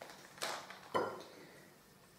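Two short knocks about half a second apart, the second with a brief ring: a packet of cotton pads set down on a wooden table and a saucer being handled.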